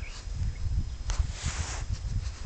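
Low rumble of wind and handling on a phone's microphone, with a few soft rustles, while the camera is being moved.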